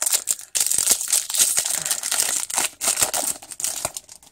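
Foil wrapper of a Pokémon booster pack crinkling and tearing as it is pulled open by hand: a dense run of crackles that stops just before the end.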